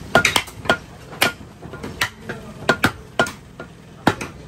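Butcher's blades striking beef and a wooden chopping block: about a dozen sharp, irregular knocks, some coming in quick clusters.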